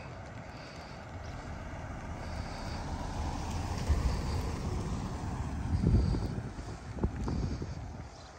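A sedan driving past close by, its engine and tyre noise building, peaking mid-way and fading as it moves off, with wind buffeting the microphone.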